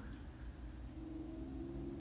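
Quiet pause with only a faint, steady low hum of room tone.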